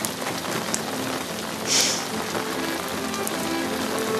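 Steady rain falling, a constant even hiss. Soft music comes in faintly about halfway through.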